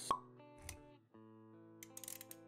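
Intro jingle with sound effects: a sharp pop with a short ringing tone just after the start, then a low thud, over held musical notes. The music drops out briefly about a second in, then resumes with a few clicks near the end.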